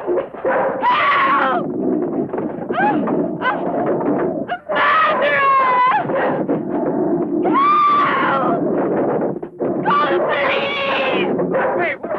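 A woman screaming again and again: about five long, wavering cries with short gaps between them.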